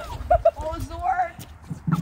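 People's voices making short unworded sounds, with two brief loud notes about a third of a second in. A short knock comes near the end.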